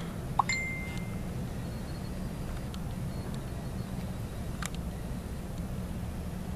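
Steady low background rumble, with a short clear high tone like a ding about half a second in, and a sharp click near the end.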